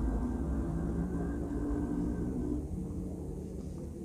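A low, steady rumble with a faint hum that slowly fades away.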